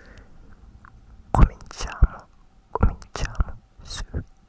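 Hands cupped over a Blue Yeti microphone's grille, rubbing and pressing on it close to the capsule. A run of short, loud rustling swishes starts about a second in.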